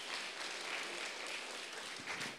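Audience applauding steadily and fairly faintly, in answer to the speaker asking whether he should go on.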